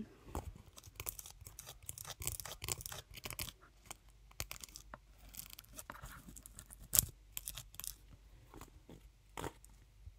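Close-up handling sounds from hands working an object near the microphone: irregular soft clicks and crinkles, with one sharp click about seven seconds in.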